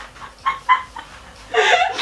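A person laughing in short bursts: two brief ones about half a second in, then a longer, louder laugh near the end.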